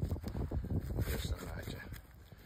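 Quiet, indistinct talk, fading toward the end.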